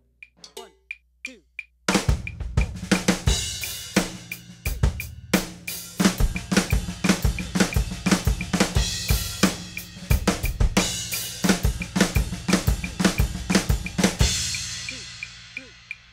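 Drum kit playing a one-sided flam accent fill, with the right-hand stroke after each flam voiced on a cymbal and backed by a kick drum. The kit comes in about two seconds in, after a few light ticks, and the passage ends on a cymbal ringing out and fading.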